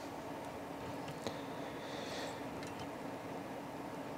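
Quiet room tone with a steady low hum, a faint click about a second in and a brief soft hiss a little later.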